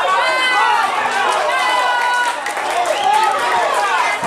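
Several voices shouting excitedly over one another, cheering a goal.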